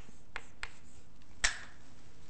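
Chalk striking and tapping on a blackboard while writing: a few short sharp clicks, the loudest about one and a half seconds in.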